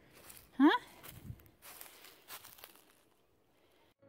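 A brief rising vocal sound from a person about half a second in, over faint, scattered crunching of dry leaf litter and gravel underfoot that fades out after about three seconds.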